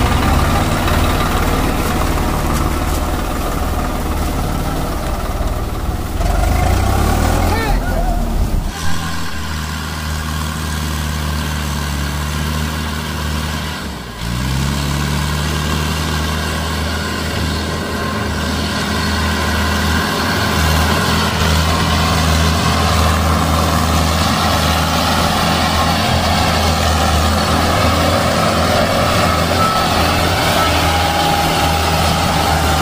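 Diesel tractor engines running under load while hauling a heavily loaded sugarcane trailer. The engine note changes about nine seconds in, then dips and climbs back up a few seconds later.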